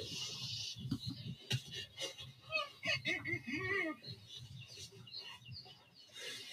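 Young white rhinos making faint, short, high squeaking calls, several arched squeaks between about two and a half and four seconds in, as they look for food. Played back through a video call's audio.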